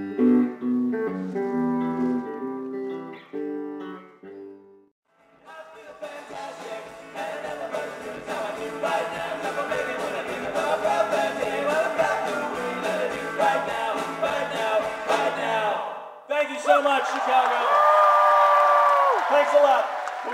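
Live rock concert music. A man sings over a strummed acoustic guitar, then a full band plays with drums, guitars and voices. Near the end come a few long, loud held notes.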